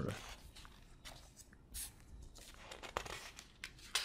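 Paper rustling faintly as a printed lecture sheet is handled on a desk, with a sharper tap about three seconds in.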